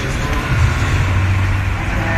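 A man's speech over a public-address system, muffled and indistinct as picked up by a phone microphone, under a steady low rumble.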